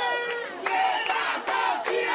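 A large crowd shouting and cheering, many raised voices at once.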